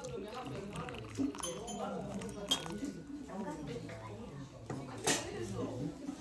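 White porcelain tea ware clinking as it is handled on a wooden table, with two sharper clinks about two and a half and five seconds in, under low background talk.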